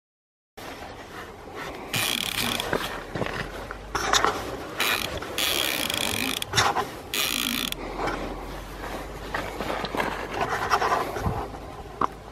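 Spinning reel's drag buzzing in several bursts as a hooked fish pulls line off against it, with rattling reel and rod-handling noise between.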